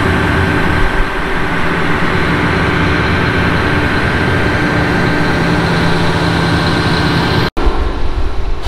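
John Deere combine running at close range: a steady engine and machinery drone with a high, steady whine over it. It stops abruptly near the end.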